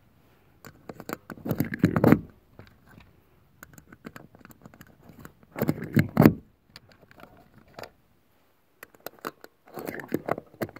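Cartridges being pressed one by one into a Bersa Thunder .380 pistol magazine: scattered small metallic clicks and scrapes, with rounds rattling in a plastic ammo tray. Two brief mumbled vocal sounds come about two and six seconds in.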